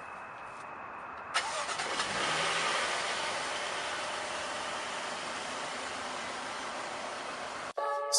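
A car engine starts with a sudden click about a second and a half in, then runs with a steady, rushing noise that slowly fades and cuts off abruptly near the end.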